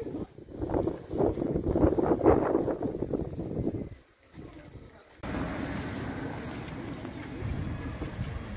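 Indistinct talking for about the first four seconds, then a short drop to near silence. From about five seconds in there is a steady outdoor hiss with wind on the microphone.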